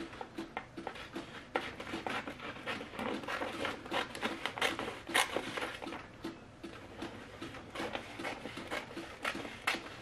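Scissors snipping through sublimation transfer paper in a run of quick, irregular cuts, with the paper rustling against the table.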